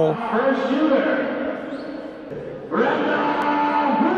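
Indistinct, echoing voices in an ice arena, with no clear words. From about three seconds in, a drawn-out, steady voice-like tone rises over the murmur.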